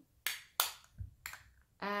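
Plastic makeup compacts clicking and tapping as they are handled and set down, about four short sharp clicks with a duller low knock about a second in.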